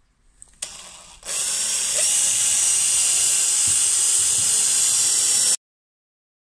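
Makita cordless drill boring a pilot hole with a twist bit into a wooden three-layer board. It runs steadily and loudly for about four seconds and then cuts off suddenly.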